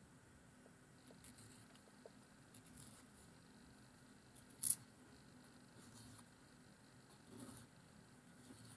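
Faint scratching and rustling from fingers working the tip of a whittled wooden twig dip pen nib, with one short sharp click just past halfway.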